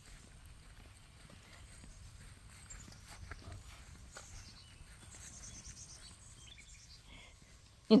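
Faint, soft footsteps walking on a grass lawn, over a low steady rumble on the phone's microphone.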